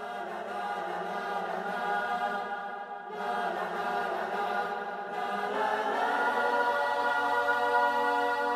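Slow vocal music with long, held choir-like notes over a soft backing, in three drawn-out phrases. The last phrase steps up in pitch about five and a half seconds in and swells toward the end.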